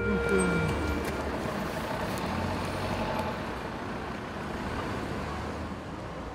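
Steady noise of road traffic with a low rumble, fading slowly toward the end. The last notes of music die away in the first second.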